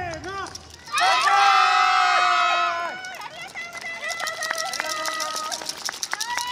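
Dance music stops within the first second. Then a group of performers shouts together in one loud, long call, followed by quieter held shouts over scattered sharp clicks.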